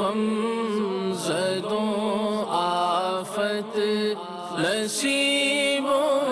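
Sung vocal theme music: voices chanting in long, wavering held notes, with a few short sharp accents.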